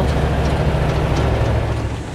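Cab noise of a MAN KAT1 off-road truck driving on a gravel road: a steady low drone of engine and tyres.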